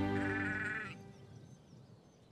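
A sheep bleats once: a short, wavering call in the first second, over the tail of fading background music.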